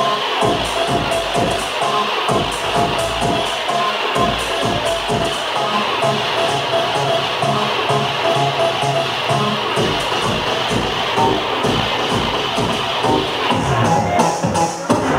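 House music from a DJ set playing over a loud sound system, with a steady beat of about two kicks a second. The deepest bass drops out for a few seconds in the middle, then comes back.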